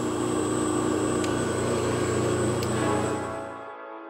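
Bench of 5-horsepower three-phase motors and their variable frequency drive running loaded, with the drive fed from single phase: a steady electrical hum with a thin high whine above it. It fades and cuts off just before the end.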